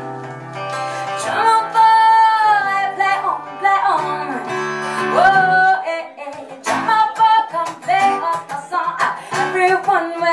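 Live acoustic band: a woman singing long held notes without words that slide in pitch, over acoustic guitar and keyboard. After about six seconds this gives way to shorter sung phrases over rhythmic strummed guitar.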